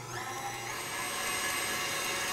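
KitchenAid tilt-head stand mixer running with its wire whisk attachment, whipping chocolate ganache into a fluffy icing. The motor whine climbs in pitch as it comes up to speed over the first half second, then holds steady.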